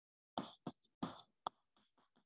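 Chalk writing on a blackboard: four short scraping strokes and taps, each stopping abruptly.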